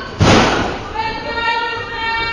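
A single loud thud of a wrestler's body hitting the ring mat, with a short echo in the hall. About a second later a high voice calls out and holds for about a second.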